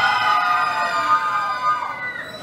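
A crowd of carousel riders, children and adults, screaming together in one long held scream that dies away near the end.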